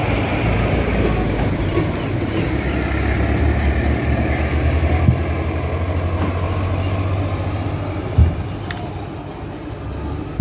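A truck engine idling with a steady low rumble, with two brief knocks, one about five seconds in and a louder one near eight seconds.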